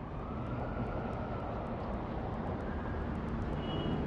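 Night-time city ambience: a low, steady traffic rumble with a siren-like tone that rises over the first second, holds, then fades.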